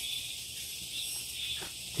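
Steady, high-pitched chorus of insects buzzing continuously.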